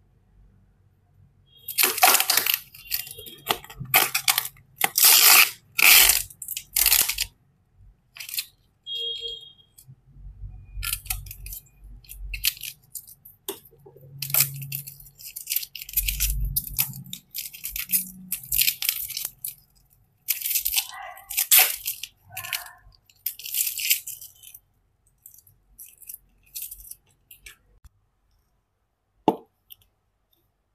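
Clear plastic blister packaging crinkling and being peeled and torn away from its card backing, in a series of irregular rustling bursts with short pauses, then a single sharp click near the end.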